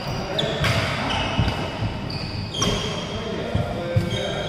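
Badminton rally: rackets strike the shuttlecock twice, about two seconds apart. Between the hits, shoes squeak on the court floor and feet thud.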